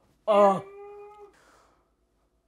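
A woman's wordless vocal sound of exasperation after fumbling a line: a loud cry that drops into a steady held note, then stops a little over a second in.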